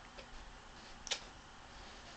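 Quiet room noise with one sharp click about a second in and a fainter click near the start.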